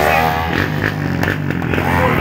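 An engine revs and falls back in the first half second, then keeps running under crowd noise, with a few short clicks.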